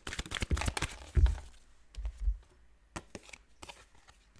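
A deck of tarot or oracle cards being shuffled by hand, a quick run of light flicking clicks for about a second and a half. Then come a couple of dull thumps and a few scattered clicks as the cards are handled.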